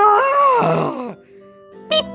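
A drawn-out, wavering vocal groan lasting about a second, over steady held notes from an electronic keyboard; a fresh loud note or sound starts near the end.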